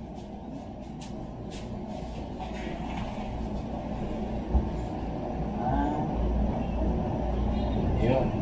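A low rumble that grows steadily louder, with a single dull thump about halfway through.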